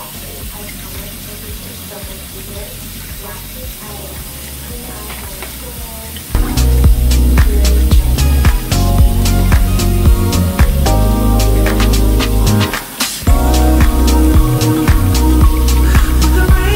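Water running from a kitchen faucet into a stainless steel sink, then from about six seconds in, loud background music with a steady beat takes over.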